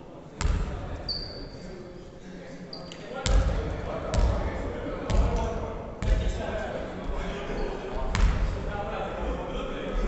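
Basketball bouncing on a wooden gym floor: a thud about half a second in, then more, roughly one a second from about three seconds in, each echoing through the hall.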